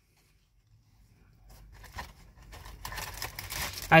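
Chewing a mouthful of pretzel-crust Pop-Tart: crackly, crunchy clicks that start about a second in and grow louder toward the end.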